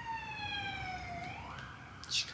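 Emergency vehicle siren wailing: one long tone slowly falling in pitch, then rising again about one and a half seconds in.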